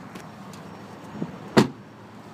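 A 1999 Toyota 4Runner's rear door shutting with a single sharp thump about one and a half seconds in, over a faint steady background.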